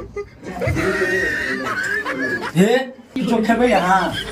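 A person's voice making wordless vocal sounds, with no clear words.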